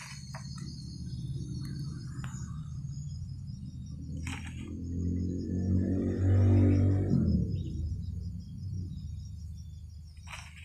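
Insects chirring steadily throughout, under a low drone that swells to its loudest about six to seven seconds in and then fades, with a few brief rustles.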